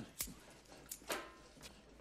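A few short, faint knocks and clicks, irregularly spaced, over a quiet room background.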